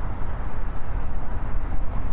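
Wind rushing over the microphone of a moving bicycle's handlebar camera, with tyre and road noise from the bike rolling along: a steady low rumbling noise.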